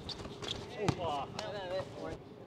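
Players' voices calling out on a basketball court during a pickup game, faint and wavering, with a sharp knock about a second in.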